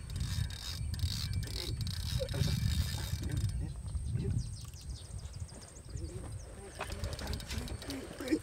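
Wind rumbling on the microphone, with faint mechanical clicking from a fishing reel as the line on a bent rod is wound in.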